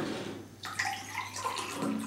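Water being poured from a glass pitcher into a drinking glass, a steady running pour.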